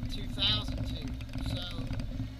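Car engine idling, a steady low hum heard inside the cabin while the car stands still in traffic.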